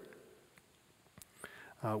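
A pause in a man's speech: near silence with a faint click and a soft breath, ending in a short spoken "uh".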